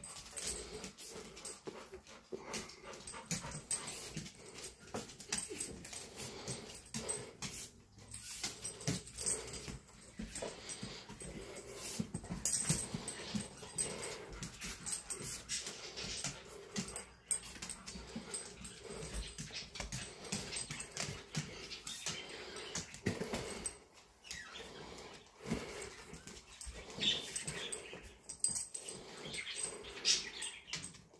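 A dog sniffing and snuffling in quick, irregular bursts as it searches for a hidden object by scent.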